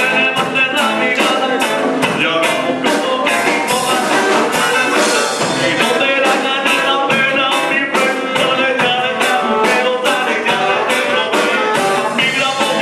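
Live band playing an upbeat song at full volume, a fast steady drum beat under singing and pitched instruments.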